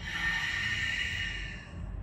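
A woman's long, audible Pilates breath, a hissing rush of air that lasts just under two seconds and then fades.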